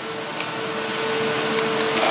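Steady background room noise between questions: an even hiss with a low steady hum, and a few faint clicks.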